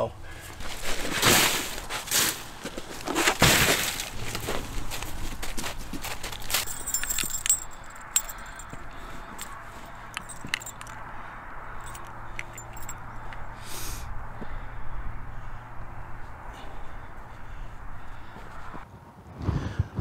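Crunching and rustling of icy snow and gear being handled in the field, loudest in a few bursts over the first four seconds, then scattered small clicks and ticks over a faint steady low hum.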